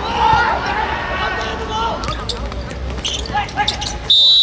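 Players shouting and calling out during a five-a-side football match, loudest in the first two seconds. In the second half come several sharp thuds of the ball being kicked on the hard court.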